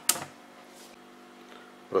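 A single sharp click just after the start, then quiet kitchen room tone with a faint steady hum.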